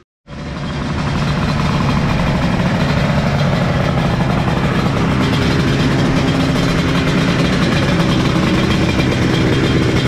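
Yamaha TZ two-stroke race motorcycle engine running steadily at a constant speed while the bike stands still, with no revving.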